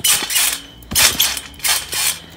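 Garden trampoline being bounced on: its mat and springs creak and rattle with each landing, three bounces in quick succession.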